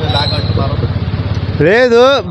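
A motorcycle engine idling close by, a steady low putter, under a man's talk, with a loud burst of his voice near the end.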